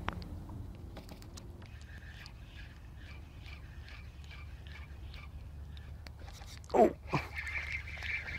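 Baitcasting fishing reel being wound in with faint, rapid ticking, over a steady low rumble of wind on the microphone. Near the end a man shouts "Oh!" as a fish strikes, and a louder, steady high rattle from the reel follows.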